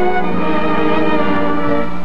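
Orchestral background music led by strings, playing held notes that change pitch a few times.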